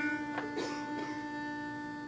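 Pitch pipe blown to sound a single reedy note, held steady for about two seconds and then stopped: the starting pitch given to an a cappella quartet before they come in.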